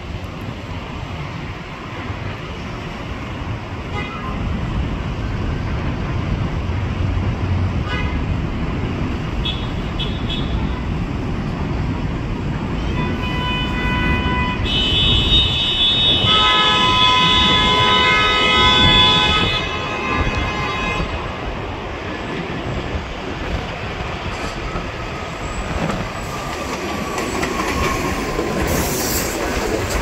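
New York City subway train (a 6 local) approaching and pulling into an elevated station, its wheel-on-rail rumble building as it comes. Its horn sounds briefly about 13 seconds in, then again for about four seconds. A high brake or wheel squeal comes near the end as it arrives.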